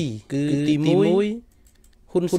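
A man's voice speaking, the pitch falling and then rising, breaking off about one and a half seconds in.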